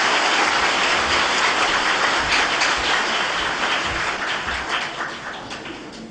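Audience applauding, a dense mass of clapping that thins out and fades near the end.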